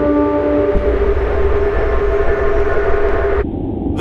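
A loud, steady low rumble with a droning tone held over it, which drops off sharply about three and a half seconds in.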